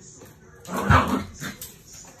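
A small dog gives a brief yelp about a second in, followed by a shorter, fainter sound.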